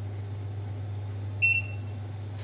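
Arrival chime of a modernized OTIS elevator: a single electronic ding about one and a half seconds in, as the car reaches its floor, over a steady low hum inside the car.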